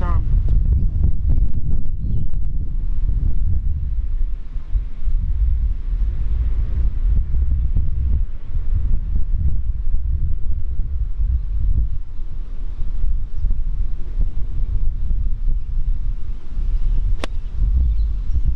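Wind buffeting the microphone throughout, a steady low rumble. Near the end comes a single sharp click of a golf club striking the ball.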